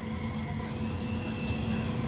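Hand-held electric doner knife running steadily as it shaves thin slices of meat off a vertical doner rotisserie: a constant motor hum with a faint high whine.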